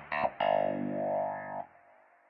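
Background music: a few short guitar notes with effects, then a held chord that stops about a second and a half in.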